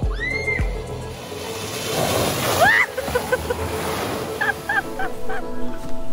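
Background music with a steady beat that stops about a second in. It gives way to a rush of splashing muddy water as an electric side-by-side drives through a flooded trail, with a few short high-pitched cries over it.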